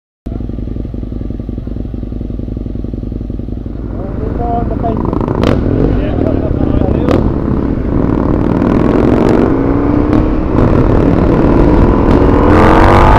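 Husqvarna Nuda 900R's parallel-twin engine running at low revs in city traffic, a steady low rumble that grows louder about four seconds in, with two sharp clicks. Near the end the revs begin to climb.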